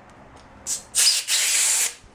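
Compressed-air blow gun blasting air under a handlebar rubber grip to break the grip glue's seal: a short puff of hiss, then a loud hissing blast of about a second that stops sharply near the end.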